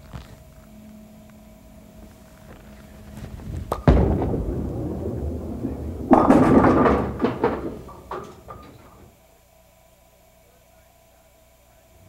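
A bowling ball thuds onto the lane about four seconds in and rolls with a steady rumble, then crashes into the pins about two seconds later; the pins clatter loudly and the sound dies away over the next two to three seconds.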